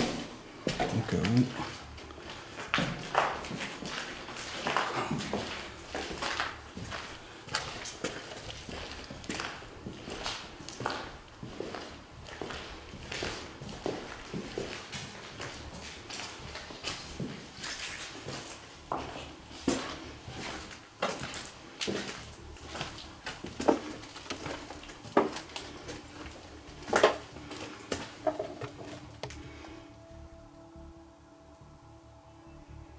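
Footsteps and crunching over rubble and debris on a hard floor, with irregular sharp clicks and knocks, a few of them louder, the sharpest about 27 seconds in.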